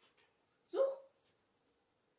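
A West Highland White Terrier gives a single short bark, rising slightly in pitch, about a second in.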